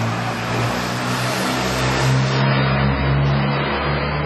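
Street traffic: a motor vehicle's engine with a rush of passing-traffic noise that thins out about halfway through, over a low, steady hum.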